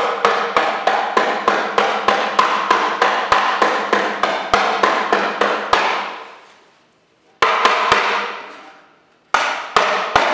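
Rubber mallet hammering on a wooden dresser drawer in a fast, even run of about two and a half blows a second, each ringing on. The blows stop about six seconds in and the ringing dies away; three quick blows follow, then a short pause, and the hammering starts again near the end.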